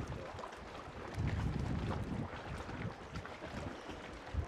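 Wind rumbling on an outdoor microphone, in uneven low gusts that swell about a second in and ease off again.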